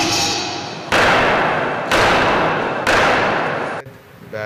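A gavel struck three times on its wooden block, about a second apart. Each strike is followed by a long echo.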